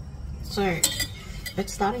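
A metal wire whisk clinking and scraping against a saucepan as hot cacao milk is whisked, in short clinks from about half a second in.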